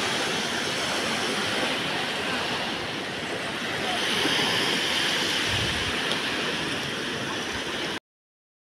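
Sea surf washing onto a sandy beach, a steady rushing that swells a little about four seconds in.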